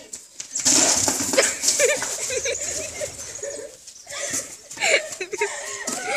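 Young girls' voices calling out loudly without clear words, in two spells with a short lull between.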